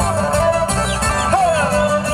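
Live Andean toril (huayno-style) music: strummed acoustic guitars under a high melody line that is held and slides in pitch.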